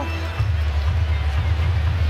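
Music with a heavy, steady bass line, with faint background noise above it.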